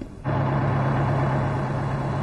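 Bus engine idling: a steady low hum that starts abruptly a quarter of a second in.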